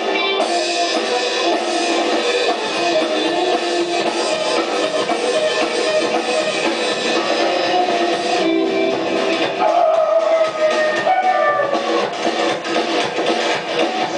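Rockabilly band playing live: electric guitar, upright bass and drum kit in a fast rock and roll number. The sound is dull and lacks top end, as it is recorded off a television broadcast.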